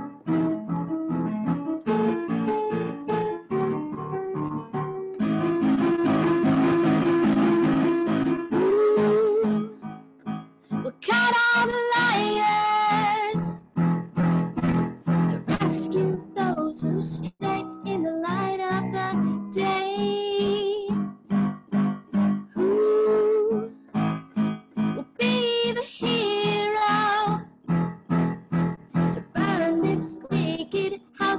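A woman singing a slow song while accompanying herself on a Yamaha electronic keyboard with a piano sound. Sustained chords run throughout, and her sung phrases come in and out, their held notes wavering with vibrato.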